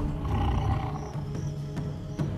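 Documentary soundtrack music with a big-cat growl sound effect for an animated saber-toothed cat; the low growl is strongest at the start and thins out.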